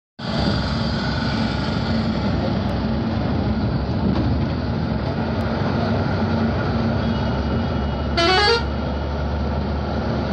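Steady engine and road noise inside a moving bus, with a low hum. About eight seconds in comes a brief toot that rises quickly in pitch.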